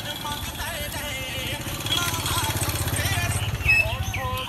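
A motorcycle engine passing close by, its low pulsing running note growing louder about halfway through and easing off near the end, with voices of people in the street behind it.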